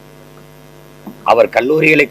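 Steady electrical mains hum, a low buzz with a few steady tones, heard through a pause in a man's speech; his voice comes back a little over a second in.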